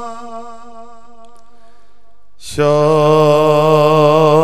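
A man singing an Urdu naat into a microphone with long held notes. A sustained note fades away over the first couple of seconds. About two and a half seconds in, a new, lower note starts suddenly and is held with a slight waver.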